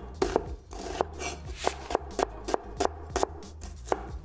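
Cleaver slicing a red onion into strips on a bamboo cutting board: a steady run of quick knife strokes, about three a second, each ending in a sharp tap on the board, over background music.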